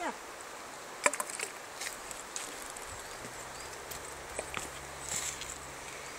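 Small splashes and knocks from a dog wading in shallow river water among stones, with the sharpest knock about a second in. A low steady hum runs through the second half.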